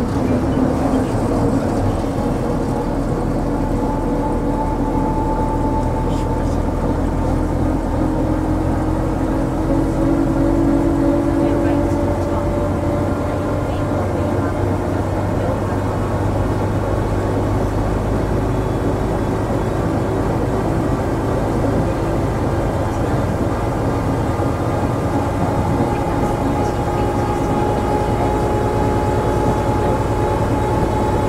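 Vintage bus engine running steadily as the bus drives along, a low drone with a fainter whine that slowly rises and falls in pitch.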